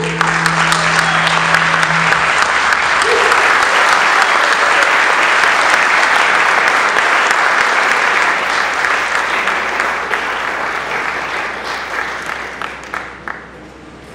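Audience applauding loudly after a piece ends, dense and steady, then thinning out over the last couple of seconds. The band's final held note rings under the first two seconds of the applause.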